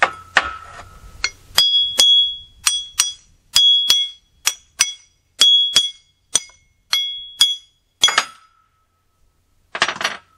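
A steel hammer striking a steel axe head, a dozen or so blows that each ring briefly, many in close pairs at about two a second, driving the old handle out of the head's eye. The blows stop after about eight seconds, and one last clank comes near the end.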